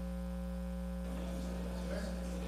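A steady electrical mains hum of low, level tones in the audio feed, with faint room noise underneath that grows slightly about a second in.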